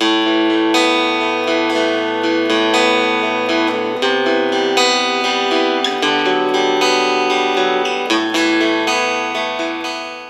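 Mogabi 200 Smart Guitar, a foldable travel acoustic-electric guitar, played as a slow progression of ringing chords that change about every two seconds.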